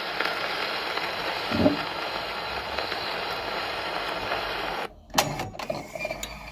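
Surface hiss from the steel needle and soundbox of an HMV Model 145 acoustic gramophone running in the inner groove of a 78 rpm shellac disc after the music has ended, with a low thump about one and a half seconds in. The hiss cuts off suddenly near the end as the soundbox is lifted from the record, followed by a few sharp clicks and knocks.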